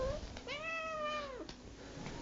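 A cat gives a short chirp, then about half a second later one meow lasting about a second, its pitch dropping at the end.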